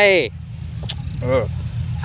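Low steady engine rumble, with the tail of a spoken "hi" at the start, a brief click just before a second in, and a short voiced sound about a second and a half in.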